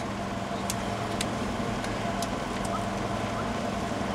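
Steady low machine hum under outdoor background noise, with a few faint clicks.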